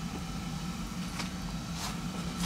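Steady low hum of basement room tone, with a couple of faint light ticks as a boxed plastic model kit is handled.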